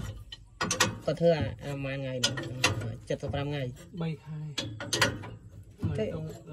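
Irregular sharp metal clicks and pitched, bending creaks from the three-point hitch of a tractor-mounted disc plough, which is being worked and adjusted by hand.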